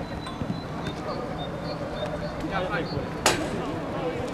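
Players' voices calling across a minifootball pitch, with one sharp thud of the ball being struck a little over three seconds in.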